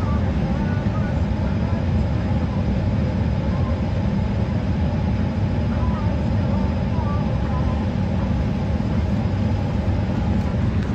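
Steady airliner cabin noise: a constant low rumble of the jet engines and airflow heard from inside the cabin.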